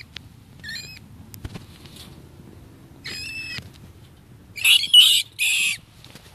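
A large rat caught in a wire live trap squealing in distress: short high-pitched squeals about a second and three seconds in, then two loud, harsh screeches near the end.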